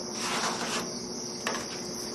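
Soft scraping of a pencil and template on a polyurethane foam surfboard blank as the tail line is drawn, with a short click about one and a half seconds in, over a steady high-pitched hiss.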